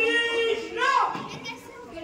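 A child's raised voice: a long, held shout, then a short swooping cry about a second in.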